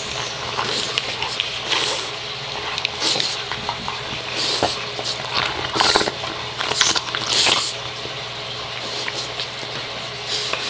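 Two dogs chewing and gnawing on an antler close to the microphone: wet mouth noises and scraping in irregular bursts.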